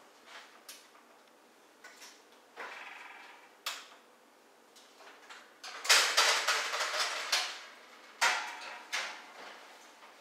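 Oven door of an electric range opening, then metal baking pans and the oven rack clattering and scraping for about a second and a half, with a second, shorter clatter about two seconds later.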